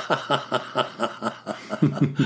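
A man chuckling: an even run of short laugh pulses, about four or five a second.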